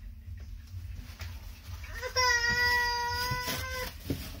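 A child's voice holding one high, steady note for nearly two seconds, starting about two seconds in, over a low steady hum.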